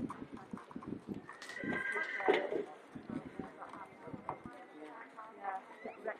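Indistinct voices of people talking. About a second and a half in comes a brief held high-pitched call lasting about a second.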